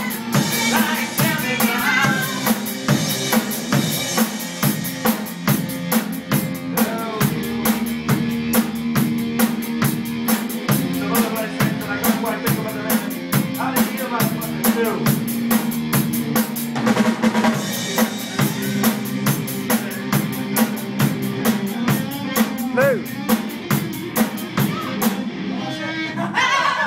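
Rock band rehearsing: drum kit, electric bass and electric guitar playing together with a steady, driving beat. The drums stop just before the end.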